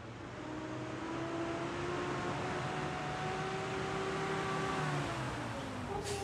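SUV engine running under load as the vehicle drives, its pitch climbing slightly and then dropping near the end as it eases off, over a steady rush of tyre and road noise.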